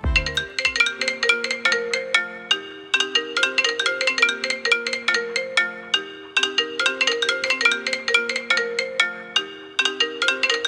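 Apple iPhone ringtones sounding for incoming calls: a repeating melody of short, bright, marimba-like notes, with brief breaks about six seconds in and again near the end.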